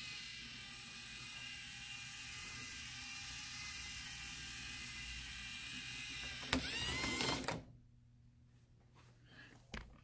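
LEGO Mindstorms EV3 robot's motors running as it drives, a steady whirr with several tones. About six and a half seconds in there is a knock, and the motors run louder with a rising whine for about a second. Then the sound drops to near silence, with a soft thump just before the end.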